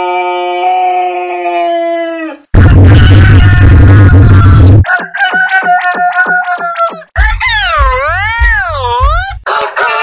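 Edited rooster crow sound effects in quick succession: a long drawn-out crow ending about two and a half seconds in, then a loud stretch with heavy bass, then a crow chopped into a fast stutter of about five repeats a second, then a crow whose pitch swings up and down about once a second over a deep bass.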